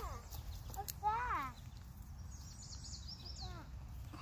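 A person's voice gives a short high call that rises and falls about a second in, and a fainter one near the end. Between them comes a quick run of high, thin bird chirps, over a steady low rumble.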